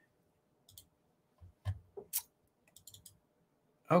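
Scattered computer mouse clicks, several separate clicks with a quick run of them near the end, heard in a quiet room.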